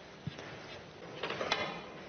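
Quiet hall ambience with a faint knock early on and a sharper click about a second and a half in.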